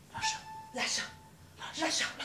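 Actors' voices making rhythmic breathy, whispered sounds, about two a second, with a faint held cat-like vocal tone early on.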